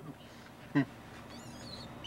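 A baboon clinging to the car's side mirror gives a short, high, warbling squeal about one and a half seconds in. A brief sharp sound comes just before it.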